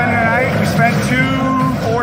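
Busy street ambience: voices over a steady din of traffic.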